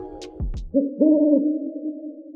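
Intro music with a beat stops shortly after the start, and an owl's hoot follows: one long low call that swells louder about a second in, then trails off.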